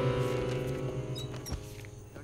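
Film background score: a sustained low chord fading out, with a few faint, short, high-pitched chirps and a single click in the second half.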